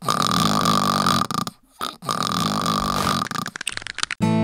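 Cartoon dragon father snoring loudly in his sleep: two long snores, each about a second and a half, with a short silent pause between.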